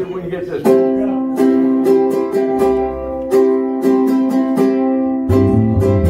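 A plucked string instrument picking a steady, repeating run of notes as a song's intro, with a low bass line joining about five seconds in.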